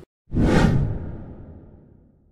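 Whoosh transition sound effect opening a channel intro: a sudden loud rush about a third of a second in, fading away over the next second and a half with a low tail.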